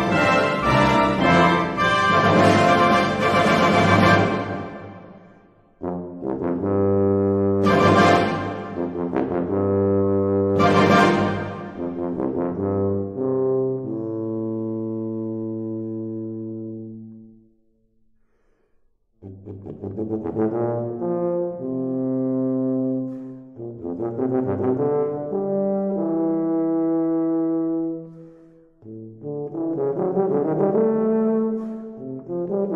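Tuba playing a slow, legato melody in phrases of long held notes. It breaks off briefly about five seconds in and again for about a second and a half a little past halfway, then carries on.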